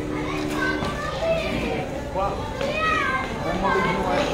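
Children's high voices chattering and calling out around the pandal, with a steady low hum in about the first second.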